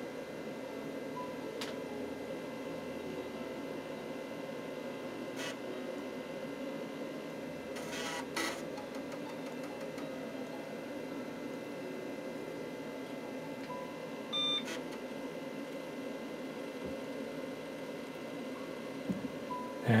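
An NCR 286 PC booting, with a steady hum from its fan and power supply. There are a few faint clicks, a short burst of disk-drive noise about eight seconds in, and one short beep about fourteen and a half seconds in.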